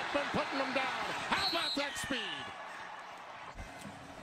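Football broadcast sound: a man's voice talking over a steady crowd din, with a couple of short thumps. The talking stops about halfway through, and the crowd noise carries on a little lower.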